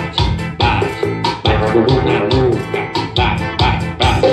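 Music played loud through a car's trunk-mounted speaker box, with a heavy, steady bass beat: the system under test after a new bass amplifier module was fitted and tuned.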